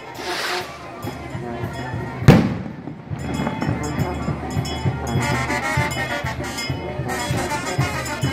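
A single sharp firework bang about two seconds in, over band music with brass and a steady drum beat.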